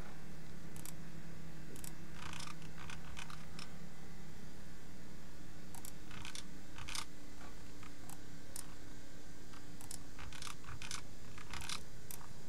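Computer mouse clicks, scattered sharp clicks, some in quick little runs, over a steady faint electrical hum and room noise.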